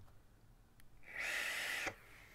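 An inhale drawn through an electronic cigarette, heard as about a second of airy hiss in the second half that cuts off abruptly.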